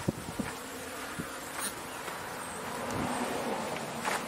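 Footsteps and rustling of brush close to a body-worn camera as the wearer walks through bushes, with a buzz that swells about three seconds in.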